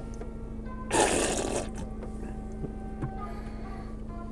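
A drink can hissing open, one short sharp burst of escaping gas about a second in, over quiet background music.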